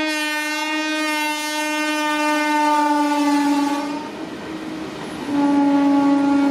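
Horn of a WAG5 electric freight locomotive sounding one long blast that drops slightly in pitch near its end and stops about four seconds in. A second long blast starts about a second later.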